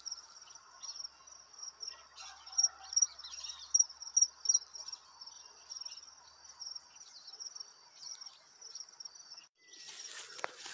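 Crickets chirping in a steady, high, pulsing trill. A run of louder high chirps comes between about two and four and a half seconds in.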